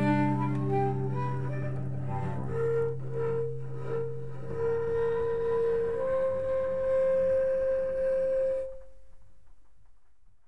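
Solo cello ending a folk song: bowed notes over a fading low drone, then a long held high note. The playing stops short near the end and the last note rings away.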